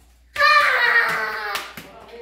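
A toddler's high-pitched voice calling out once, for about a second, falling slightly in pitch.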